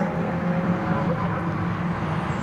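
Engines of a pack of BMW E36 Compact race cars heard at a distance as they lap the circuit: a steady drone, with a higher held note that fades about halfway through.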